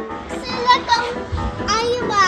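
A young child's high, gliding, wordless excited vocalising over light background music, with a brief low thud about a second and a half in.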